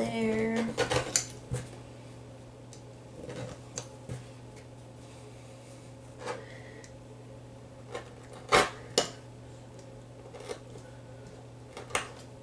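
Scattered clicks and knocks of tools and fabric being handled and set down on a worktable, with two sharp clicks close together about two-thirds of the way through, over a steady low hum.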